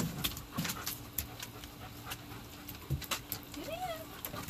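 German Shepherd stepping into a shallow plastic kiddie pool: a sharp knock at the start, then scattered clicks, knocks and small splashes of paws on the wooden deck and in the water. A short rising whine comes near the end.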